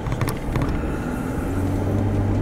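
A car being driven, heard from inside the cabin: a steady engine hum under tyre and road noise. The hum grows louder about halfway through.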